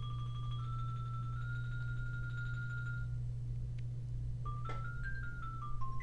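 Sampled xylophone (Virtual Drumline medium-dark mallet patch) played back by notation software: rolled notes stepping up in pitch for about three seconds, a short pause, then a quick run of single notes rising and falling. A steady low hum runs underneath.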